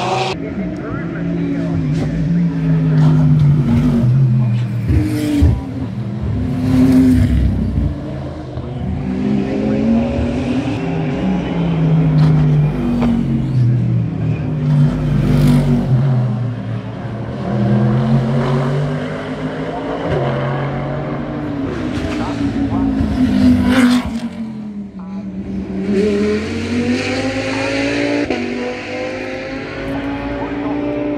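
Race car engines passing through a series of bends, their pitch repeatedly falling and rising again as the cars come through one after another.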